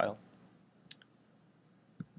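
A few faint computer mouse clicks about a second in, over low room noise.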